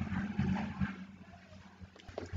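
Faint low, steady hum of recording background noise, with a few soft irregular sounds in the first second.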